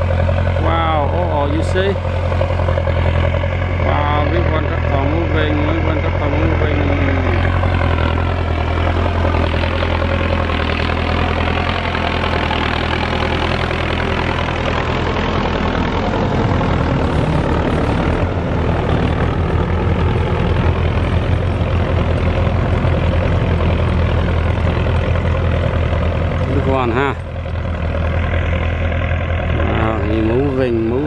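Belarus 1025 tractor's turbocharged diesel running steadily under load as it pulls a tillage implement through dry soil, with a low drone throughout and more rattle and rush in the middle as it passes close.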